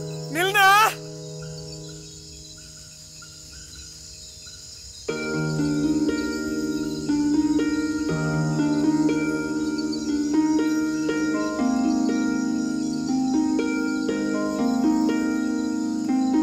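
Film soundtrack: a sung phrase fades out about a second in, leaving a steady chorus of crickets. About five seconds in, an instrumental melody of short stepped notes starts up over the crickets, leading into a song.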